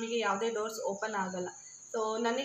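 A woman talking, pausing just before the end, over a faint steady high-pitched whine.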